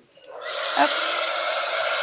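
Embossing heat tool switching on about a third of a second in, its fan blowing hot air with a steady whoosh and a faint high whine as it dries ink on paper.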